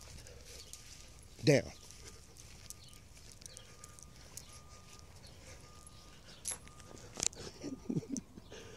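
A man shouts a single sharp "Down" at a dog about a second and a half in. After that come quiet outdoor sounds with a few faint clicks and handling noises, and a short voice sound near the end.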